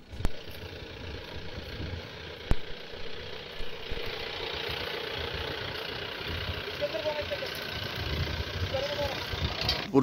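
An engine runs steadily on a pickup fitted with a locust-spraying gun, under a constant hiss. There is a sharp click about two and a half seconds in.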